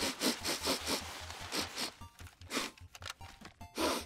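Cartoon sound effect of a bear sniffing in quick, short sniffs, with a longer drawn-in sniff about a second in, over background music.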